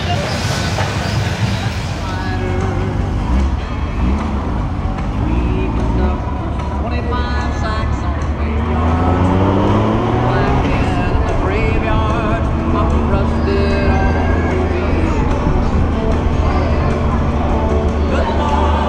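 Motorcycle engines running, with voices and music mixed in. An engine note rises about nine seconds in.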